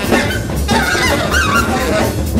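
Free-jazz trio playing: a saxophone plays wavering high notes that bend up and down in pitch, over double bass and drum kit.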